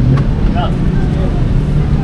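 Steady low hum and rumble of background noise, with a short faint voice about half a second in.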